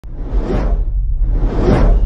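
Two cinematic whoosh sound effects, each swelling and fading, about a second apart, over a steady deep rumble.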